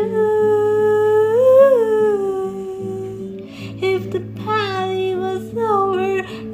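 Music: a solo voice holds one long wordless note that lifts briefly about a second and a half in, then sings shorter phrases from about four seconds in, over acoustic guitar.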